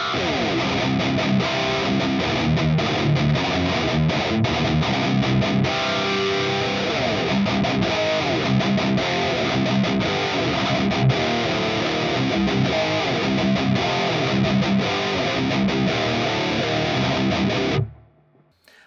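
High-gain electric guitar riff in drop C from a PRS S2 Satin 24, played through a Revv Generator 120 amp capture and a MIKKO2 cabinet impulse response that blends four miked cabinets. The playing is steady and rhythmic, with the top end rolled off by the cab sim, and it cuts off suddenly near the end.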